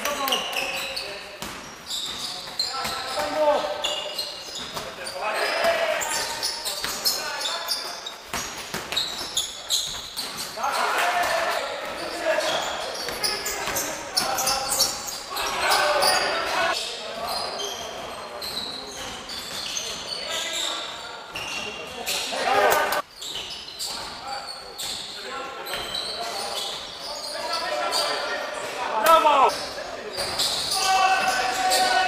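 Live sound of an indoor basketball game in a large sports hall: the ball bouncing on the wooden court with players' voices calling out.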